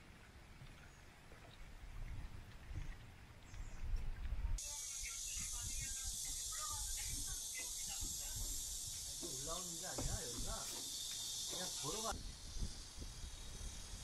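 Steady high-pitched hiss of cicadas in the summer trees, starting abruptly about four and a half seconds in and stopping abruptly about twelve seconds in, with people talking faintly beneath it. Before it there is only a low rumble.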